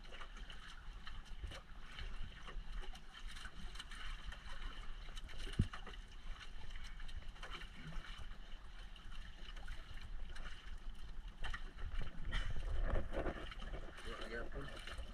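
Wind and water noise on a small outrigger boat at sea, wind rumbling on the microphone, with scattered light clicks throughout. A sharp knock comes about halfway, and a louder gust of rushing noise comes near the end.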